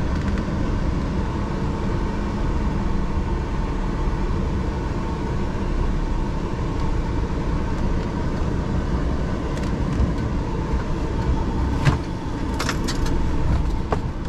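Truck's diesel engine running at low speed, a steady low rumble heard from inside the cab. A few short sharp clicks or rattles come near the end.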